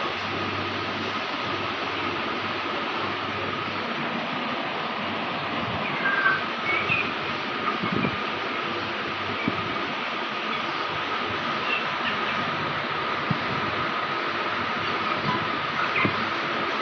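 A steady machine-like whirring hum with a faint whine runs throughout, while young Aseel chickens peck grain off a concrete floor with faint scattered taps. A couple of short chirps come about six to seven seconds in.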